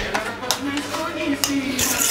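Hands laying raw cod fillets into a steel pan of chopped vegetables, with a few light clicks and soft handling noises against the pan.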